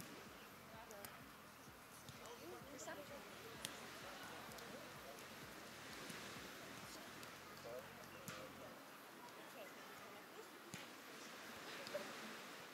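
Faint outdoor background of distant, indistinct voices, with a few sharp clicks.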